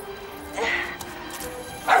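Cartoon puppy barking over background music: one short bark about half a second in, then quick repeated barks starting near the end.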